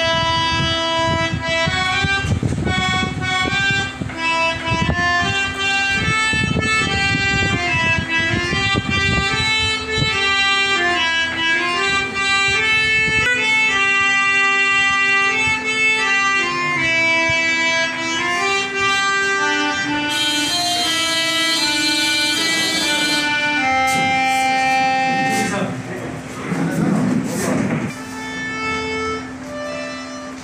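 Harmonium playing a slow melody of held notes over a steady drone note.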